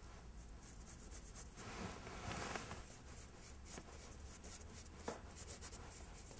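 Filbert bristle brush loaded with thick paint scribbling on canvas paper: faint, irregular scratchy strokes, coming quicker near the end.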